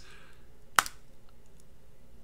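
A single sharp click of a computer mouse button, a little under a second in, against faint room tone.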